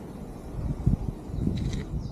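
Wind rumbling on the microphone as a mountain bike rolls along a dirt track, with a few short low knocks about a second in.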